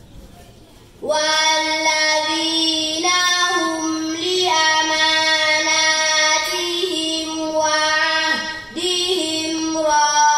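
A young girl chanting Quranic recitation (tajwid) into a microphone, in long, melodic held notes that glide between pitches. It begins after a short pause about a second in.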